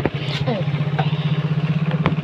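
A small engine running steadily with a fast, even low putter, like an idling motor, with a brief voice fragment about half a second in and a few light knocks.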